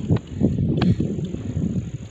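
Wind buffeting a phone's microphone, an irregular low rumble, with a couple of sharp knocks from handling.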